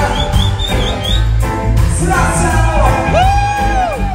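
Live reggae band playing loud, with heavy bass and steady drums. A long held note swells and falls away near the end.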